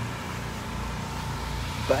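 An engine running steadily at constant speed, a low even hum.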